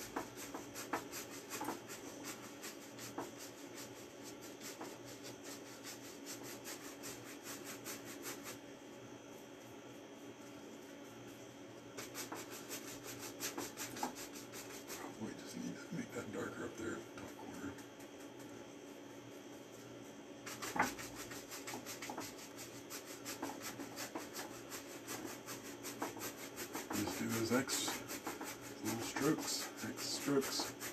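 A stiff 2-inch chip brush scrubbing oil paint across a canvas in rapid back-and-forth strokes, blending the sky. The scrubbing eases off for a few seconds about a third of the way in, then resumes.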